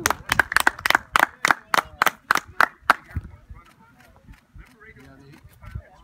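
Hand clapping, steady and evenly spaced at about four claps a second, stopping about three seconds in; faint voices follow.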